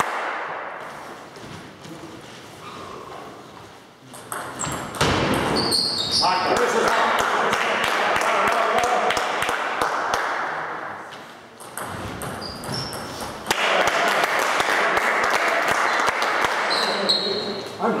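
Table tennis ball clicking sharply off the paddles and the table in rallies, the clicks coming in quick runs. Over long stretches it is covered by loud, mixed voices and crowd noise.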